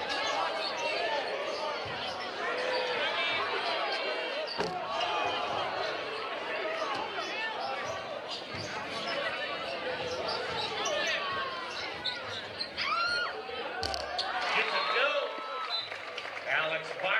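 Basketball game in a gymnasium: a packed crowd's chatter and shouts over a basketball bouncing on the hardwood court, the crowd getting louder near the end.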